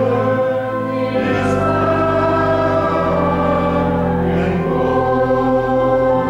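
Choir singing a slow hymn in long held chords, moving to a new chord about a second in and again near three seconds.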